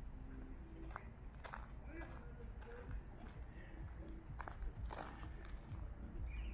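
Footsteps on a dirt path, a few soft scuffs about half a second apart, over a low steady outdoor rumble, with faint distant voices.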